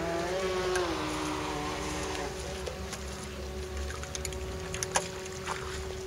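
Radio-controlled model speedboat running fast across the water, its electric motor giving a steady whine that rises briefly in pitch about half a second in. A few sharp clicks come near the end.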